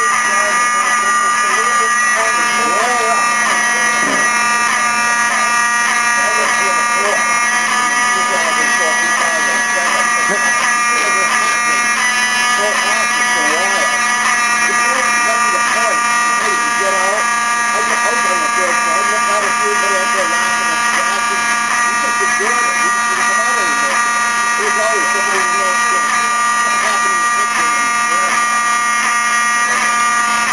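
Apartment building fire alarm sounding continuously as a steady, unbroken buzzing tone, set off by smoke from a pot of ramen left cooking on the stove.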